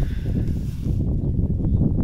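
Wind buffeting the microphone outdoors: an irregular low rumble with no pitched tone in it.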